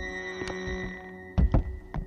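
Cartoon soundtrack: a held music score, with two heavy thuds close together about a second and a half in.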